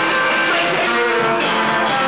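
Live rock and roll band playing, with electric guitar to the fore and no singing for these two seconds.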